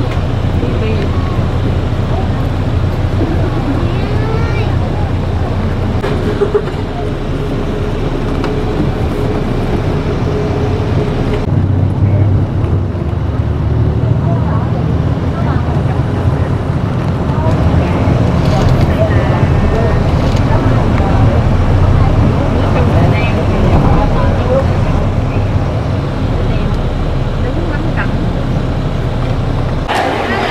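Steady low rumble and road noise of a moving vehicle, with people talking in the background.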